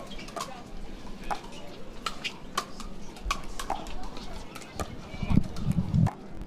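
Pickleball rally: paddles striking a plastic pickleball back and forth in a quick series of sharp pops. A louder low sound comes near the end.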